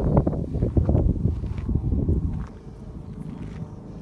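Wind buffeting the microphone, a low rumble that is strong for the first two and a half seconds and then eases off.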